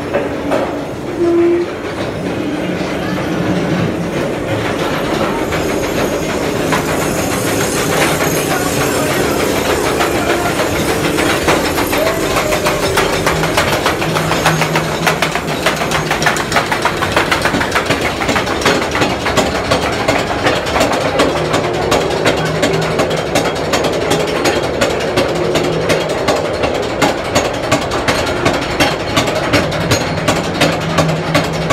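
A rail vehicle running on track with a steady rhythmic clacking that settles into about two clacks a second in the second half. A short steady tone sounds about a second and a half in.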